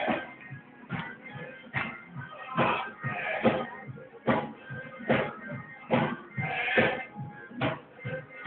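Live church praise music with a sharp, steady beat a little faster than one per second, and quieter music between the beats.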